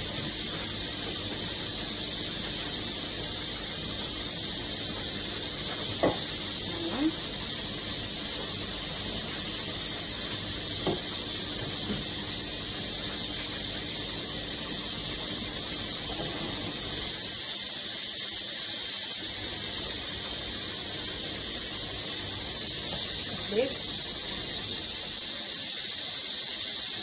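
Steady hiss of steam from pots cooking on the stove, with a few brief faint clicks and squeaks scattered through it.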